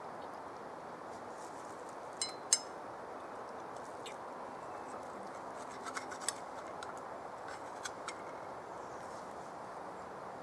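A few sharp clicks and clinks of sticks against a small metal camp pan while eating from it, the loudest about two and a half seconds in and a cluster around six seconds, over a steady soft hiss.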